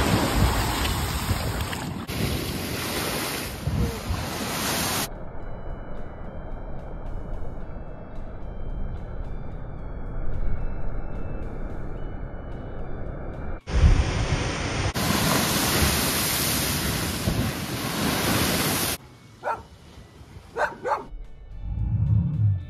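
Waves breaking against a seawall, with wind on the microphone, heard as a few abruptly cut sections of steady noise. It turns quieter near the end, with a few short sharp sounds.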